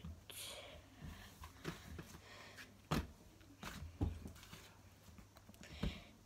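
Hands kneading and pressing slime against a tabletop: faint soft squishes, with a few short knocks in the second half.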